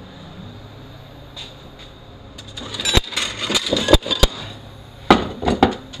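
Loose steel automatic-transmission parts (clutch drums, gears, plates) clinking and knocking against each other as they are picked through on a metal workbench. The clatter starts about halfway in, with several sharp knocks, over a steady low hum.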